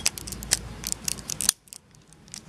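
Plastic parts of a Beyblade Driger G clicking and scraping as the attack ring is twisted to the left to lock it onto the rest of the top: a quick run of small sharp clicks that stops about one and a half seconds in.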